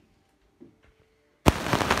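A second and a half of near silence, then a sudden loud, dense crackling: fingers rubbing over a phone's microphone as the phone is handled.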